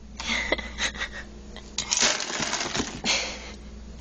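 Dry cat kibble rattling and clinking in a metal bowl as it is scooped out by hand and tipped into a plastic container, in two spells of clatter, the longer one from about two seconds in.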